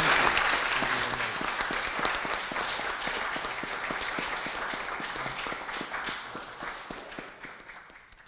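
Audience and panel applauding: many hands clapping together, gradually fading away.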